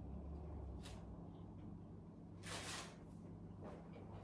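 A man quietly chewing a bite of burrito, with faint mouth clicks and one short burst of noise about two and a half seconds in, over a low steady room hum.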